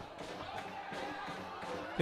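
Faint field ambience from a football stadium: a low, even background noise with no distinct event.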